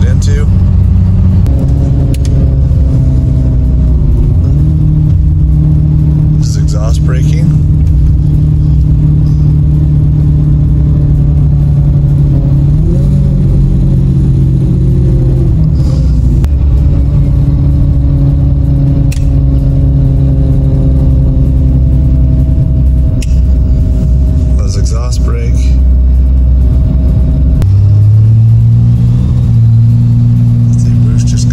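6.7L Cummins inline-six turbo-diesel with compound turbos (VGT over S480) running under way, heard from inside the cab as a steady low drone. Its pitch shifts several times, gliding up near the middle and stepping up near the end; the exhaust brake is engaged about halfway through.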